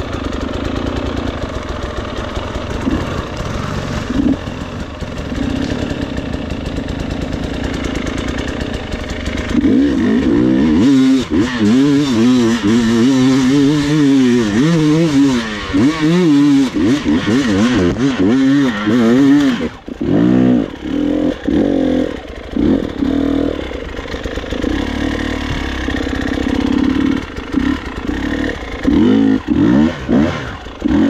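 Dirt bike engine running steadily at first. From about ten seconds in it revs up and down over and over, then runs in short choppy bursts of throttle with brief drops, as it is ridden over rough ground.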